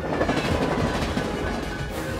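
Film soundtrack: orchestral score mixed under a dense, continuous layer of action sound effects from the shifting city and the chase.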